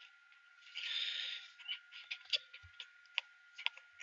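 Faint scattered clicks and taps, about eight of them in the second half, after a short breathy hiss about a second in, over a faint steady high whine.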